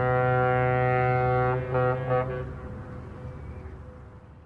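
The Caribbean Princess cruise ship's horn sounds one long, deep, steady blast. The blast breaks off about a second and a half in and is followed by two short blasts, then an echo that fades away.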